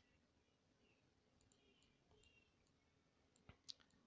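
Near silence, with two faint computer mouse clicks close together about three and a half seconds in.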